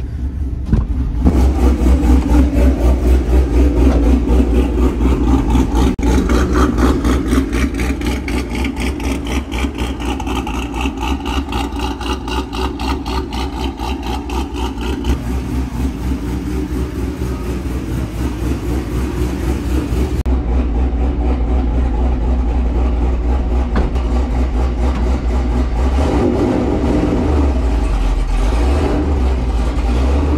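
Cammed GMC Sierra V8 with a BTR stage 4 cam idling through a Corsa Extreme equal-length exhaust with no resonators: a loud, choppy, pulsing lope, loudest in the first few seconds.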